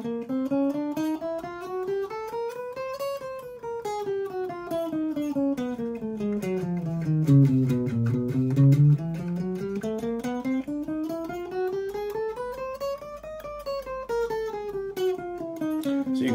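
Electric guitar playing a four-finger chromatic exercise, single notes picked strictly alternately at a steady, even pace. The line climbs across the strings for about three seconds and falls back over about five, then climbs and falls again.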